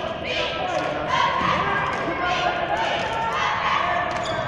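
Basketball being dribbled on a hardwood court during live play, mixed with indistinct shouting from players and the bench in a large arena.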